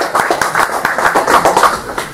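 A room full of people clapping and laughing, the clapping a dense, irregular patter that stops at the end.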